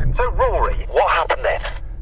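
Laughter and a man's voice, thin and narrow-sounding, through a handheld two-way radio's speaker, over a steady low hum.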